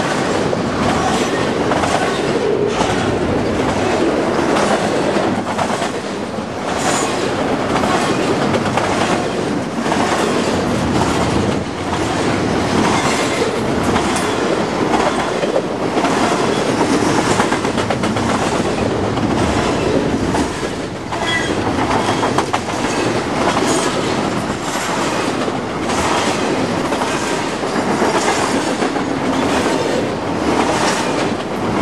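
Double-stack intermodal freight cars rolling past close by: a steady loud rumble of wheels on rail with a recurring clickety-clack as wheel sets pass over the track.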